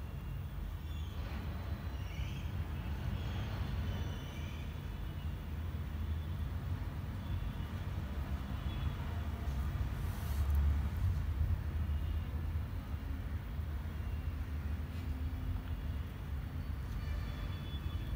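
Steady low background rumble, swelling briefly about ten seconds in, with a few faint high chirps in the first four seconds.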